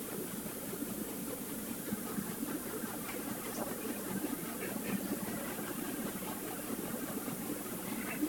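Steady low hum and hiss of room background noise, with no distinct events.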